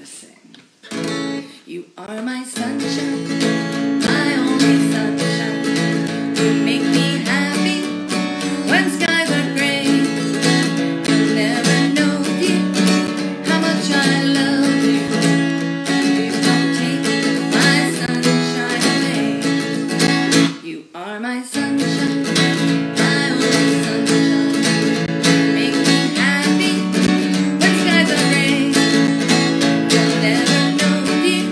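Acoustic guitar strummed in steady chords, with a woman's singing voice along with it. The playing gets going about two seconds in and breaks off briefly about twenty seconds in before picking up again.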